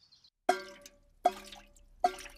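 Cartoon sound effect of water dripping from a leaking roof into a bucket: two drips about three-quarters of a second apart, each a short ringing drop that fades away.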